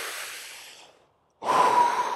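A man's breath, close on the microphone: one long breath that fades out over about a second, then, after a short pause, a second breath with a faint whistling note in it.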